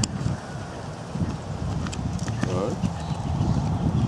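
Hoofbeats of a horse cantering on a sand arena, in a steady rhythm. A brief voice cuts in about halfway.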